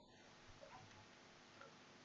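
Near silence: room tone with a few faint clicks, about half a second in and again later.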